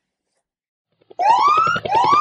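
Digital silence for about a second, then an outro sting starts: a siren sound effect that rises in pitch twice in quick succession, with a fast pulse under it.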